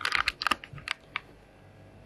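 A quick flurry of light, sharp clicks and clatter, like small hard objects tapping together, in the first second or so. After that only a faint steady hum is left.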